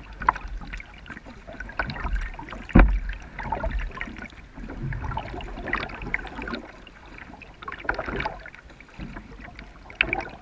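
Kayak paddle strokes in calm water: the blade dipping and pulling with splashes and drips about every two to three seconds. A single sharp knock comes about three seconds in.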